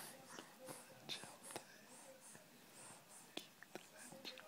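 Near silence, with faint whispering and a few soft, brief clicks.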